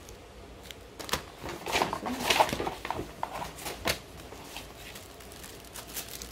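A small cardboard box of chewy fruit candy being opened by hand: a run of crinkles, scratches and sharp clicks, loudest about two seconds in, dying down after about four seconds.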